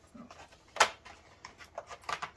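Cardboard advent calendar and its packaging being handled: a series of small clicks and rustles, with one sharp snap a little under a second in.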